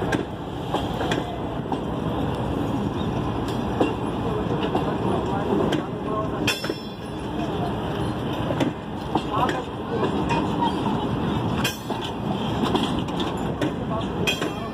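Passenger train coaches rolling past close by: a steady rumble of wheels on rail, with sharp clanks, the loudest about six and a half and eleven and a half seconds in.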